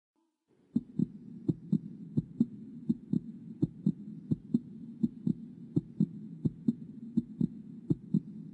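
Heartbeat sound effect in a cartoon soundtrack: paired low lub-dub thumps, a little faster than one beat a second, over a steady low hum, starting about half a second in. It builds suspense before a frightening moment.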